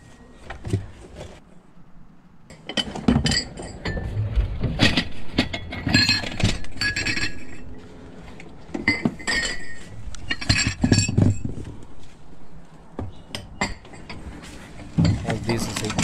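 Porcelain cups, bowls and broken plate shards clinking and rattling against each other as they are picked up and shifted about, in irregular spells of sharp clinks with a short ringing after each, sparse for the first couple of seconds.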